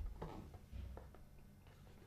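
Quiet room tone with a few faint, soft ticks in the first second, from hands handling tools against the wallpaper.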